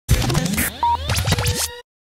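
Short music sting of turntable-style record scratching: rapid sweeps up and down in pitch with sharp strokes over a low steady hum, cutting off suddenly just before the end.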